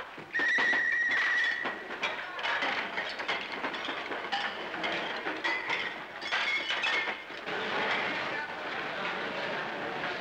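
Mess-hall meal clatter: plates, cups and cutlery clinking and scraping in quick, scattered knocks, with a low murmur of voices. A brief high steady tone sounds about half a second in and lasts just over a second.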